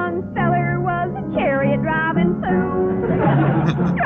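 A woman singing with piano accompaniment, her voice sliding up and down in pitch on held notes.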